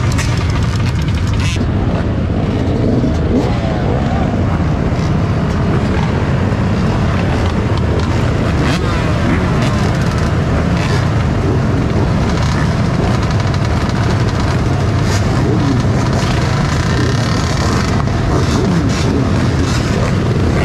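Engines of a large pack of dirt bikes and ATVs running together, with several revving at once so their pitches rise and fall over one another over a steady low rumble.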